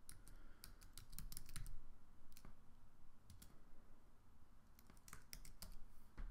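Typing on a computer keyboard: a quick run of key clicks in the first couple of seconds, a few single keystrokes, then another run near the end.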